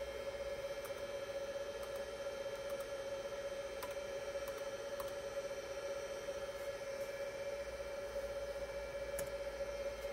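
Steady whine of the Juniper EX3300-24T switch's cooling fans, running at their lower speed now that the unit has loaded, over a low hum. A few faint keyboard key clicks.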